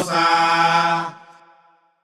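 Final held sung note of a Santería song for Elegua. The drums stop, and one steady chanted note carries on alone for about a second, then fades out.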